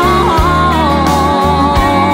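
Country song: a woman's voice holds a long, wavering sung note and then moves on, over a band accompaniment with a steady bass line.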